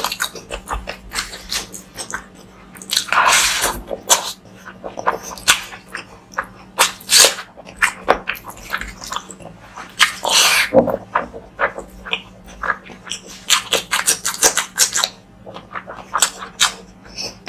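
Close-miked wet chewing and lip-smacking of rice and curry eaten by hand, made up of rapid short clicks with a few longer wet sounds about three, seven and ten seconds in.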